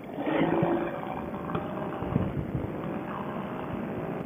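Moster 185 single-cylinder two-stroke paramotor engine running steadily in flight, heard as an even, muffled rumble and rush of air through a helmet headset microphone.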